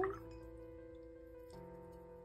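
Soft background music of sustained, held notes; the held notes change about one and a half seconds in.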